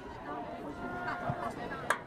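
Nearby spectators talking indistinctly in the stands, with one sharp click near the end.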